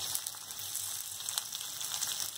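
Chopped onions going into hot oil with green chillies and seeds in an iron kadai, sizzling steadily with a few sharp crackles.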